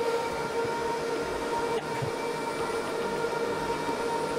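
HPE DL560 Gen10 rack server's cooling fans running steadily under benchmark load: an even rush of air with a whine of several steady tones.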